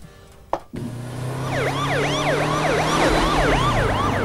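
Emergency-vehicle siren in a fast yelp, its pitch rising and falling several times a second, over a steady low vehicle hum. It starts about a second in, after a short quiet spell.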